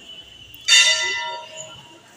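A temple bell struck once, about two-thirds of a second in, ringing with a clear metallic tone that dies away over about a second.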